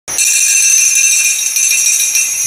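Small metal bells rung together: a bright, jingling ring with many high overtones that starts suddenly and keeps ringing. These are altar bells, marking the start of the Mass.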